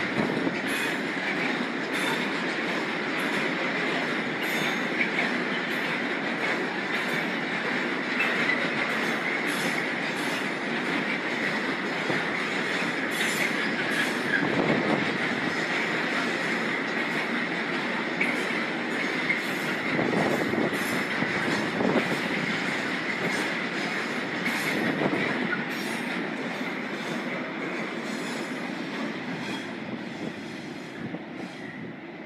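Freight train of silo wagons rolling through: steady wheel-on-rail noise with a continuous high wheel squeal and irregular clacks as wheels cross rail joints. It fades over the last few seconds as the end of the train moves away.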